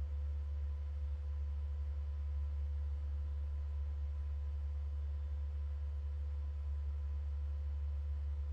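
A steady low electrical hum with faint, higher steady tones above it, unchanging throughout, with no speech.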